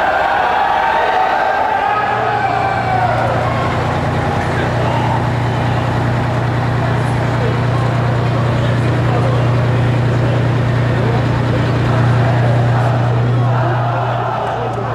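A parked fire engine's engine running steadily: a low, even hum that comes in about two seconds in and holds. Crowd voices are heard over the first few seconds.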